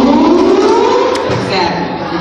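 A woman singing into a microphone through a PA, holding one long note that slides up in pitch and then eases back down.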